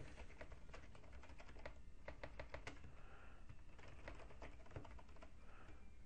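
Faint typing on a computer keyboard: an irregular run of key clicks as a string of random characters and symbols is entered.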